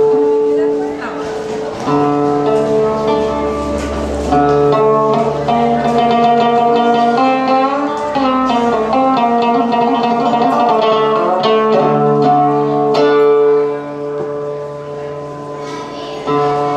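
A homemade three-string instrument built from a metal snow shovel, its strings plucked to play a melody over held ringing notes, some of them bending in pitch partway through.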